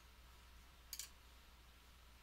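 A single computer mouse click about a second in, press and release close together, in otherwise near silence.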